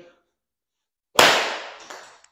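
A full pitching-wedge swing striking a golf ball off a hitting mat on a concrete floor: one sharp crack about a second in that echoes in the garage, followed by a softer knock just before the end.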